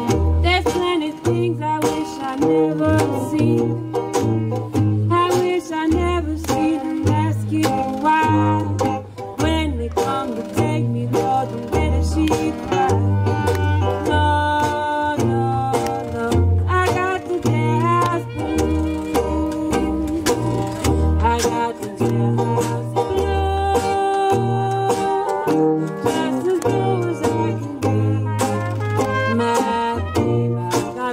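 Traditional New Orleans-style jazz band playing a blues live. A woman sings over strummed banjo and guitar and a sousaphone bass line on the beat, and a cornet is playing near the end.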